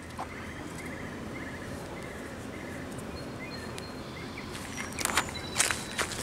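Quiet outdoor background with a faint, rapidly repeated high chirping in the first half. About four seconds in, a run of short scuffs and clicks follows and is the loudest part.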